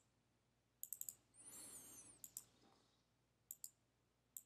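Faint computer mouse clicks: a quick run of four clicks about a second in, then pairs of clicks later. A brief, faint high squeak that rises and falls in pitch comes between them.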